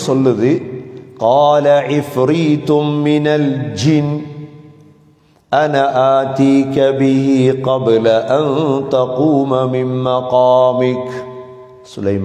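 A man reciting Qur'anic verses in a melodic, chanted style, his voice holding long sustained notes. There are two long phrases: the first fades out around four to five seconds in, and the second starts about five and a half seconds in and runs almost to the end.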